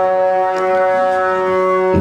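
Funeral music: a reedy wind instrument holding one long, steady note.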